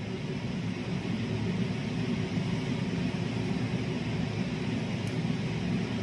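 Steady hiss with a low hum of room background noise, under faint handling of satin cloth as it is folded into pleats. A faint tick about five seconds in.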